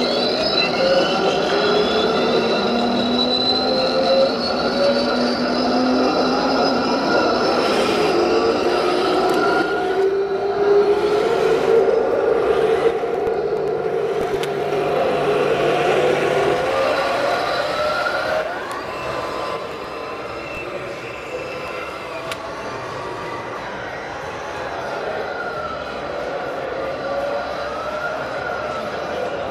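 Digital sound unit of a Hooben 1/16 RC M1A2 SEP Abrams tank playing a gas-turbine engine whine that spools up at the start, then rises and falls in pitch as the model drives, mixed with the running of its drive motors and tracks. The sound drops somewhat in level about two-thirds of the way through.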